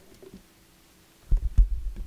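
A few loud low thumps and bumps on a desk microphone about a second in, typical of the microphone being handled or adjusted just before someone speaks into it, over a faint steady hum.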